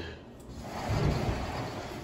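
A closet door being opened: a rustling noise that builds up, with a low bump about a second in.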